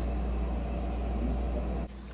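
Steady low rumble with an even hiss, the running background noise beside a gas stove, cutting off abruptly just before the end.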